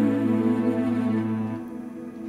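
The song's closing chord held on an electronic keyboard and dying away, a low bass note under it cutting off about one and a half seconds in.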